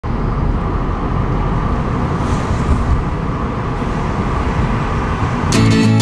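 Steady road and engine noise heard inside a moving car's cabin. Shortly before the end a strummed acoustic guitar chord from background music cuts in.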